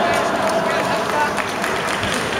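Many spectators talking and calling out at once, a steady babble of overlapping voices.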